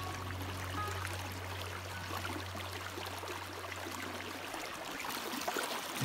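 Creek water running, an even rushing trickle, with a low held note of background music under it that fades away about three-quarters of the way through.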